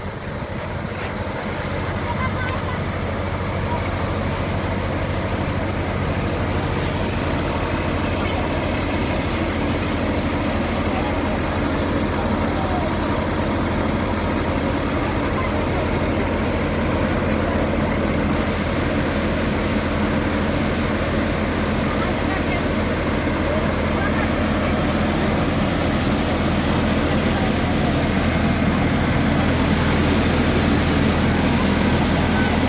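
Multicrop thresher running steadily while being fed paddy, a continuous low machine hum with the rush of threshing. It grows slightly louder toward the end.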